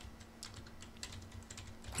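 Faint, irregular light clicks from computer input as a web page is scrolled, over a thin steady low hum.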